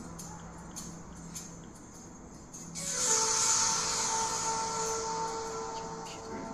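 Recording of Arctic sea ice moving under pressure, played through the room's speakers: a faint hum with scattered clicks, then nearly three seconds in a loud squeal of several held tones over a hiss that slowly fades.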